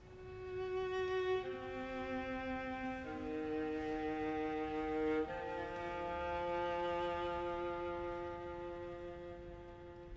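String quartet playing slow, sustained bowed chords. The chord swells in from quiet, moves to new chords about a second and a half, three and five seconds in, then holds one long chord that fades slightly toward the end.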